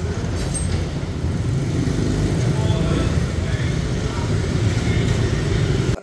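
Street traffic with motorbikes and a car passing close by: a steady low engine rumble and road noise.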